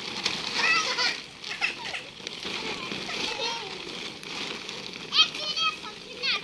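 Young children's high-pitched voices calling out and chattering as they play, in short bursts, with the loudest cry about five seconds in.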